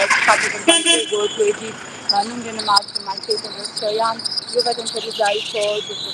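Talking voices over a high, steady chirring of insects that comes in about two seconds in.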